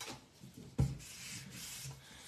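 Cardstock being pressed and slid by hand across a glass craft mat: a knock about a second in, then a steady soft rubbing.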